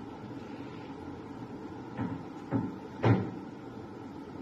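Three short knocks or thumps about half a second apart, the last one the loudest, over a steady low background noise.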